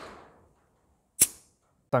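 A brief soft hiss fading away, then a single sharp click about a second in.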